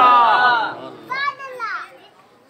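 A man's voice drawing out a long, wavering 'Allah' that ends under a second in, then a short, high-pitched wavering vocal call about a second in.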